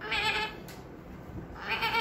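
A girl's voice mimicking an animal's bleat: two short, wavering bleats, one at the start and one near the end.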